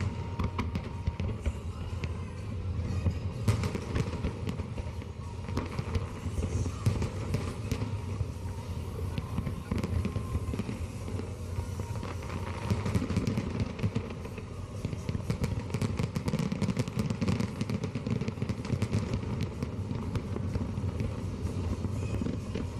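Fireworks going off: a continuous crackle of many small pops over a low rumble.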